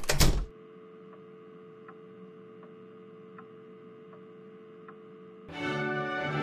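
A door slamming shut at the start, then a steady low hum with faint ticks about every three-quarters of a second. Music starts near the end.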